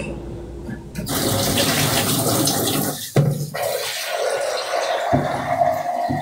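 Rushing water noise coming over a live-chat phone connection. It starts suddenly about a second in and runs for about five seconds.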